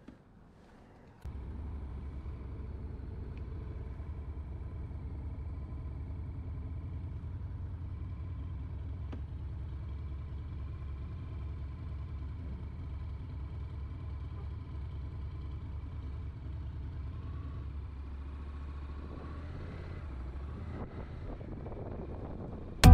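Honda CTX700's parallel-twin engine starting about a second in, then idling steadily with a low, even drone.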